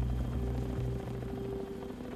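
Low, steady rumble of a Chinook helicopter hovering.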